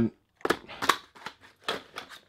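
Boxed spools of fishing line in plastic packaging being handled and set down on a clear plastic tackle box: several short crinkles and taps.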